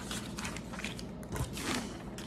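A large sheet of paper rustling as it is handled and lifted off a table, with a soft knock about halfway through.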